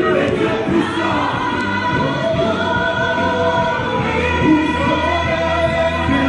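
Gospel worship singing: a man sings into a microphone through the church sound system, with several voices joining in on long held notes. A steady low bass note enters about four seconds in.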